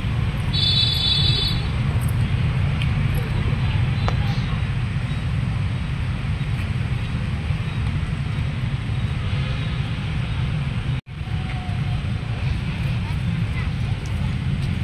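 Outdoor background noise: a steady low rumble, with a brief high tone sequence about a second in and a sudden dropout about eleven seconds in.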